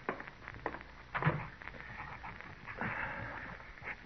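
Radio-drama sound effects of footsteps on a wooden floor: scattered knocks and steps, with a louder thump about a second in and a brief scuffing noise near the end.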